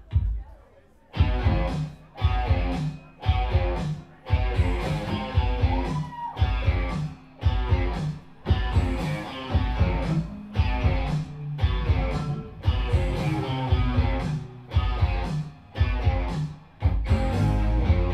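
Live rock band playing electric guitar, keyboard and drums. After a short pause the full band comes in about a second in, with heavy, stop-start hits and brief drop-outs about every second and a half.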